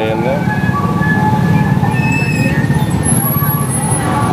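Busy street traffic, with motorcycle and car engines running close by, mixed with music and voices.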